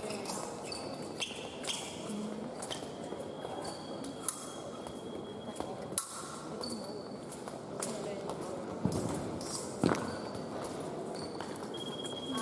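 Épée fencers' footwork and blade contacts on the piste, heard as scattered sharp clicks and knocks with a louder knock near the end. Short electronic beeps sound over the hum of a large, echoing hall.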